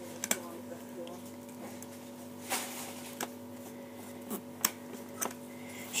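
A handful of short, light clicks and taps from handling paper craft pieces, scattered irregularly over a steady low electrical hum.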